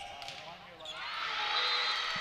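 Indoor volleyball rally: ball contacts on the court under arena crowd noise that swells steadily louder from about a second in.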